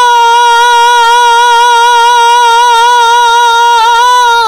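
A woman singing a Bengali folk song unaccompanied, holding one long, steady note on an open vowel.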